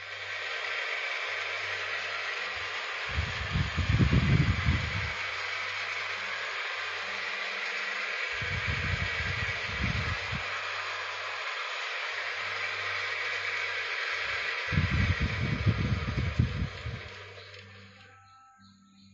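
Wood lathe running as it turns a geta bera drum shell, with a hand rubbing the spinning wood: a steady hiss over a faint hum. Three stretches of low rumble come in about three, eight and fifteen seconds in, and the sound fades away near the end.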